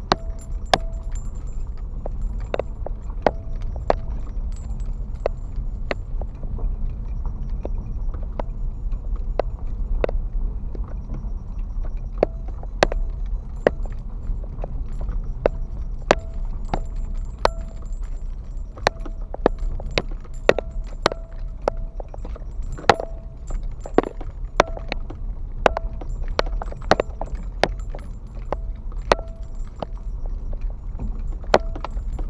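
Car driving slowly over a rough gravel and dirt road, heard from inside the cabin: a steady low rumble with frequent, irregular clicks, knocks and rattles as the car jolts over the uneven surface.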